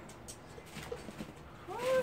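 Faint light clicks of chopsticks and food at the table. Near the end comes one short, high call that rises and falls in pitch.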